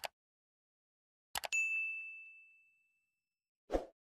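Subscribe-button animation sound effects: a double mouse click at the start and another about a second and a half in, followed at once by a bright notification-bell ding that rings out and fades over about a second and a half. Near the end comes a short whoosh with a low thud.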